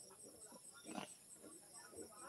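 Near silence: room tone with a faint short sound about a second in.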